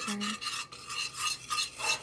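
A spoon scraping round and round a stainless steel saucepan as it stirs a sugar and food-colouring mixture, in quick repeated strokes of about four a second.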